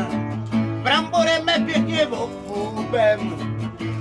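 Acoustic guitar strummed in steady chords, accompanying a sung folk-style song between verses.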